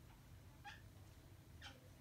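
Near silence with two faint, brief squeaks about a second apart from a marker writing on a whiteboard.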